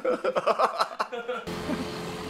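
Several men laughing heartily in short, rapid bursts. About one and a half seconds in, the laughter cuts off abruptly, replaced by steady outdoor background noise with a low hum.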